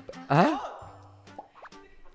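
Light background music from a TV variety-show clip, broken about a third of a second in by a short, loud exclamation that rises in pitch as "Cut!!" is called.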